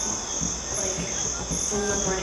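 Crickets chirring steadily, a continuous high-pitched drone.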